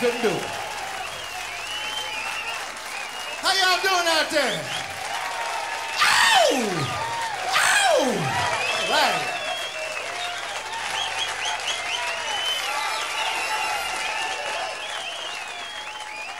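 Live audience applauding and cheering at the end of a song, with shouting voices and three loud whoops that fall steeply in pitch.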